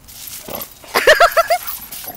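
Dogs play-fighting: a rush of scuffling noise, then from about a second in a quick run of short, arching barks, about five a second.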